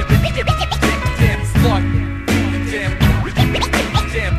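Hip hop music: a drum beat over a steady bass line, with turntable scratching cutting in and out.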